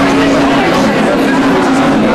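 Many people talking at once in a crowded room, a dense and steady babble of chatter with a low steady hum under it.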